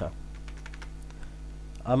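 A few light computer keyboard key clicks over a steady low hum.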